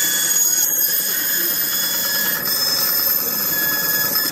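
Ryobi benchtop band saw running and cutting a thin piece of wood: a loud, steady whine with several high tones over the noise of the blade.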